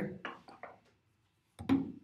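A man's voice in a few short fragments, separated by silence.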